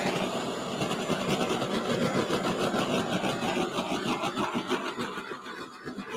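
Handheld torch flame hissing steadily as it is passed over a wet acrylic pour to pop the air bubbles rising in the paint; it thins out near the end.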